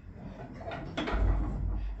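Church bell rope being pulled: rubbing and a faint knock from the rope, then a low rumble about a second in.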